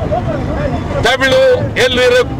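A man speaking, with a steady low rumble of street and crowd noise behind him.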